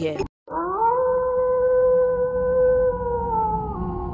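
Wolf howl sound effect: one long howl that rises at the start, holds steady for about three seconds and dips slightly near the end.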